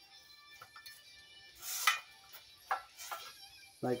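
Handling noise from a small-engine recoil starter as the knotted rope end is pushed into its pulley: a brief scrape about two seconds in and a few light clicks, over faint background music.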